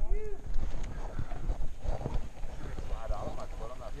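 People's voices: a short vocal sound that rises and falls in pitch at the start, then faint voices, over a low rumble on the microphone of a helmet-mounted action camera.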